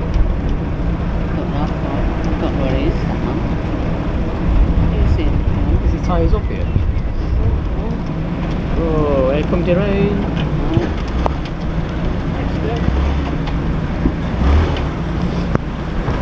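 Narrowboat engine running steadily at low revs, a continuous low hum, as the boat creeps forward.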